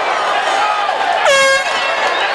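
One short air-horn blast about a second and a quarter in, over the shouting voices of an arena crowd.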